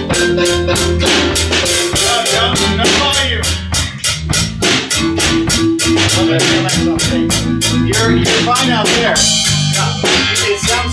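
Live band jamming: a drum kit keeps a steady beat under an electric bass guitar and keyboard, with no singing.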